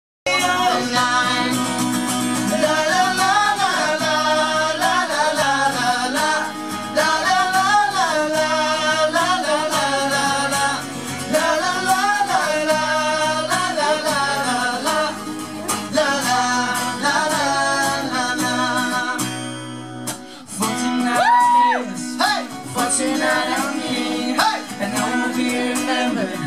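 Male vocal group singing live in harmony over a strummed acoustic guitar, with a short break in the music about twenty seconds in.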